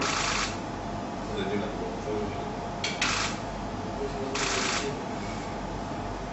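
A camera shutter firing three times, at the start, about three seconds in and about four and a half seconds in, each a short noisy burst of about half a second, over a steady room hum.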